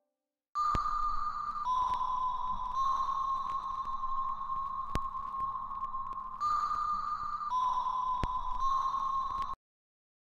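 A sustained high tone that drops slightly in pitch about a second in, rises again past the middle and drops back, over a faint low hum with a few sharp clicks. It cuts off suddenly near the end.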